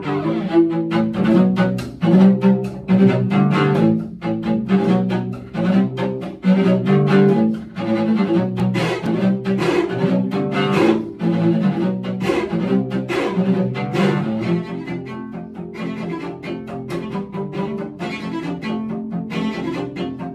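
Two cellos playing a duet, a fast, rhythmic passage of short repeated bow strokes under a melodic line.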